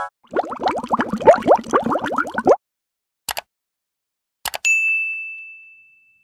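Intro-animation sound effects: a quick run of rising, bubbly bloops for about two seconds, then two short clicks, the second followed at once by a single bell-like ding that rings and fades away. These are the sounds of a subscribe-button and notification-bell animation.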